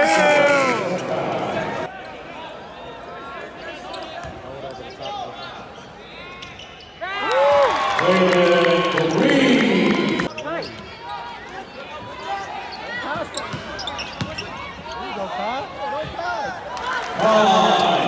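Basketball dribbled on a hardwood court during a live game, with voices calling out around the court, loudest from about seven to ten seconds in.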